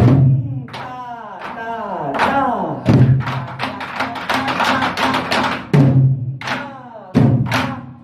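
Korean barrel drum (buk) played nanta-style with two wooden sticks. Deep booms on the drumhead alternate with quick, sharp clacks of the sticks on the rim and wooden body, and a dense run of rapid clacks comes in the middle.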